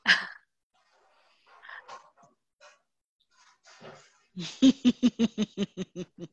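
A woman laughing: a quick run of short voiced pulses, about five a second, starting after a mostly quiet stretch.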